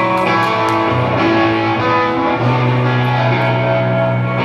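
A live rock band playing an instrumental passage: electric guitars over bass, drums and keyboard, with cymbal strikes in the first second and the bass note changing twice.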